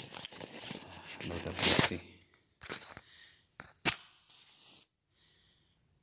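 Rustling and handling noise close to the microphone, followed by a few sharp clicks, the loudest about four seconds in; it stops about five seconds in.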